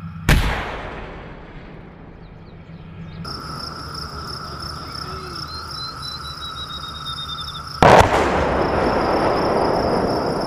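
An M109 Paladin 155 mm self-propelled howitzer fires once, a sharp boom that fades over about two seconds. Insects trill steadily in the background, and about eight seconds in the shell's impact explosion lands, the loudest blast, with a long rumbling tail.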